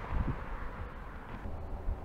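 Wind buffeting an action camera's microphone outdoors, a steady low rumble and hiss, with a brief low thump just after the start as the camera is moved.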